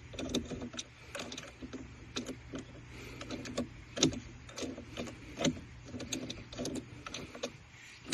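Small wooden blocks inside a wooden puzzle lock pushed around with a thin pick: faint, irregular clicks and scrapes of the tool and blocks against wood and the plastic cover, with two sharper clicks about halfway through.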